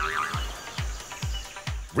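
Background music with a steady bass beat.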